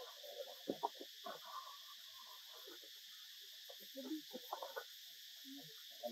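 Faint forest ambience: a steady high insect buzz, with scattered soft short low sounds over it.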